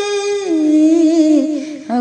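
A woman singing an Urdu nazm, holding a long wordless note that steps down in pitch about half a second in and wavers, before a new sung phrase begins near the end.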